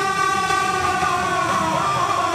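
Live Indian devotional (bhajan) music: a long held note, steady in pitch and sagging slightly near the end, over the band's accompaniment.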